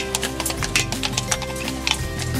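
Instrumental background music, with horse hooves clip-clopping on cobblestones.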